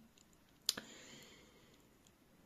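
A single short, sharp click about two-thirds of a second in, followed by a faint brief trail, in an otherwise very quiet pause.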